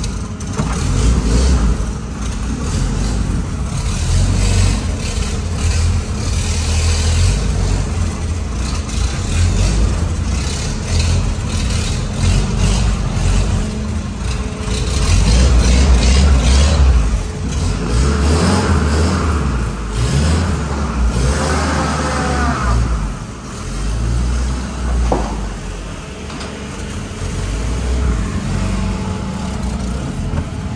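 A WWII military jeep's four-cylinder flathead engine running and revving unevenly as the jeep is driven slowly out of the workshop, heard from the driver's seat with some body rattle.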